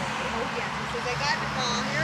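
Outdoor background with short chirping calls and a vehicle engine's steady low hum, which sets in about a second in.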